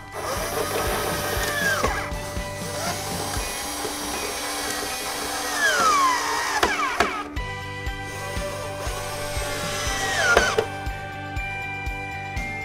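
A cordless drill driving screws to fix casters to a wooden crate, running in three bursts whose pitch rises as the motor speeds up and falls as it slows. Background music with a steady beat plays underneath.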